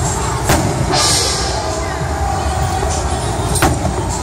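Aerial firework shells bursting: two sharp bangs, one about half a second in and one near the end, with a hissing spray of sparks about a second in, over a steady low rumble.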